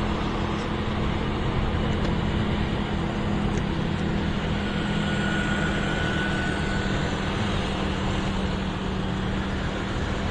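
Motorcycle engine running steadily with a constant low hum while riding in city traffic, with wind and road noise on the microphone.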